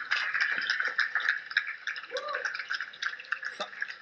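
Audience applauding, a dense patter of many hands clapping that thins out toward the end.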